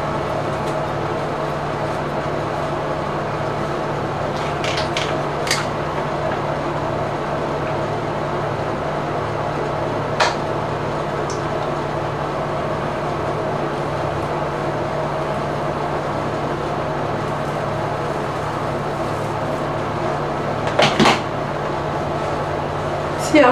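A steady low mechanical hum, like a running fan, with a few light clicks and taps as a comb and a flat iron are handled in the hair: a cluster about five seconds in, one near the middle, and a double click near the end.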